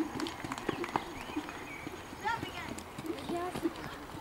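A pony's hooves trotting on sand arena footing: soft, irregular hoofbeats, with faint voices in the background.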